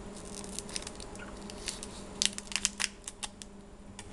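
Crinkling and crackling of a trading card pack's wrapper being handled, irregular sharp crackles bunching together about two to three seconds in.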